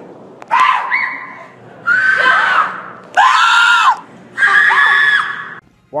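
Human screaming: four loud screams in a row, each about a second long, the pitch of each rising and then falling.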